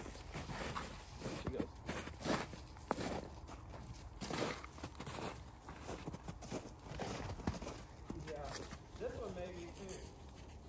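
Footsteps crunching irregularly across thin snow on frozen ground. A faint voice comes in near the end.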